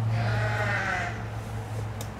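An animal's bleat-like call, about a second long and slightly wavering in pitch, over a steady low hum.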